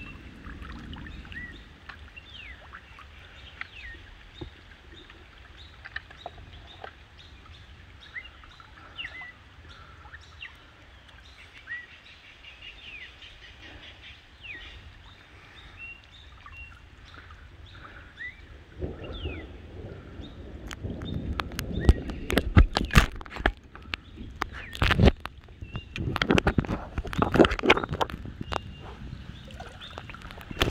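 Small birds calling with many short chirps over a low rumble of wind and water. About two-thirds of the way through, loud irregular splashes and knocks start and become the loudest sound.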